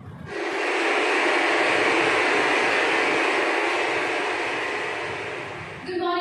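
A loud, steady rushing noise that starts suddenly just after the beginning and stops suddenly near the end.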